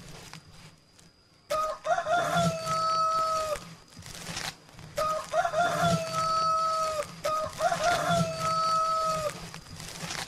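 A rooster crowing three times in a row, each crow a few short broken notes that settle into one long held note.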